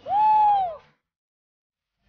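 A single high 'whoo' from a voice, rising then falling in pitch and lasting under a second.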